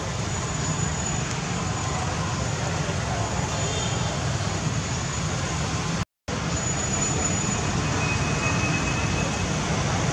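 Steady background rumble and hiss with no distinct events, cut off by a brief gap of silence about six seconds in.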